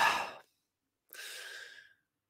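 A man's audible breath into a close microphone, a sigh lasting about two-thirds of a second, just over a second in.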